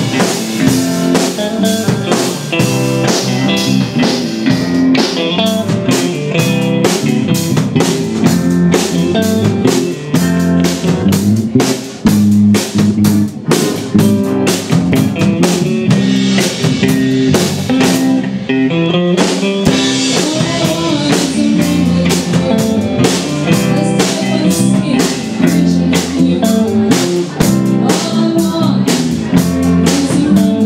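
Live rock band playing with electric guitar, bass and drum kit over a steady, driving beat. The cymbals drop out briefly about two-thirds of the way through, then the full beat returns.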